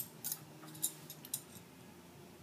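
Metal forks clinking lightly as they are handled for a fork-and-quarter balancing stack: a handful of faint, sharp clicks in the first second and a half.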